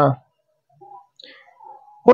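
A man's speech breaking off, then a pause holding a few faint, short clicks close to a handheld microphone.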